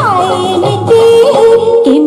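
Indian dance music with a solo voice singing a gliding, ornamented melody over sustained accompaniment, holding one long note about a second in.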